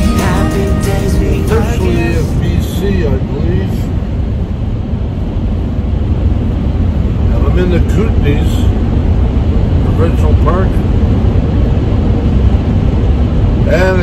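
Steady low rumble of engine and road noise inside a Ford E250 van's cab while driving. Background music fades out in the first couple of seconds, and a man's voice comes in briefly a few times.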